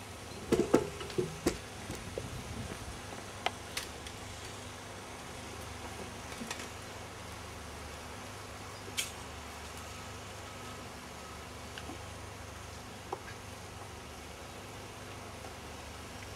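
A steady low background hum with scattered light clicks and knocks, several of them close together in the first two seconds.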